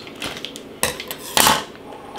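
A pair of kitchen scissors clattering as they are put down on the countertop: a light knock, then a louder clatter about a second and a half in.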